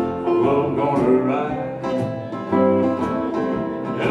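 Live country band playing an instrumental passage between vocal lines: acoustic guitars strumming with upright bass and electric guitar over a steady beat.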